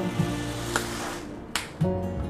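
Soft background music, with a rustle of packaging being handled and one sharp click about one and a half seconds in, as a plastic blister pack holding an electric toothbrush is turned over and opened.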